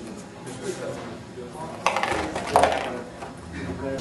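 Ping pong balls clacking as they drop and roll through a cardboard ball-sorting machine: two sharp clicks about two seconds in, a bit under a second apart, amid lighter rattling.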